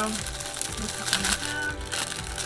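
Foil Pop-Tart wrappers crinkling as they are torn open by hand, with a crackly burst about a second in, over quiet background music.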